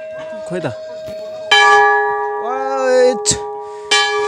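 Hanging brass temple bells rung by hand. One is still ringing out at the start, a fresh strike about a second and a half in rings on with several clear steady tones, and another strike comes near the end.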